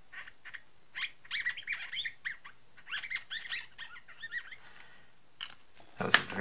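Felt tip of an alcohol marker squeaking as it is rubbed back and forth over glossy cardstock: bursts of short, high squeaks that bend up and down in pitch, about a second in and again about three seconds in.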